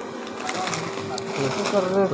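Indistinct voices in the background over a steady, even hum; the voices grow louder and clearer near the end.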